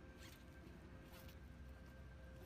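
Faint backpack zipper being pulled open in two short strokes about a second apart.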